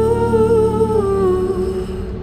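A wordless vocal note held for about two seconds with a slight waver, fading near the end, over a sustained backing chord in a slow pop song.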